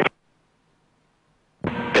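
Dead silence between two aircraft radio transmissions: one call cuts off just after the start, and the next begins about a second and a half in.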